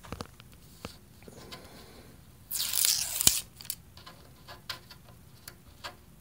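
Blue painter's tape being peeled off a telescope's metal front cover: one loud rip lasting under a second, about two and a half seconds in, ending in a sharp click, with light handling clicks before and after.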